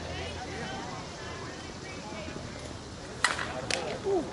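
Softball bat striking a pitched ball: one sharp crack about three seconds in, followed about half a second later by a second, fainter knock, over faint voices.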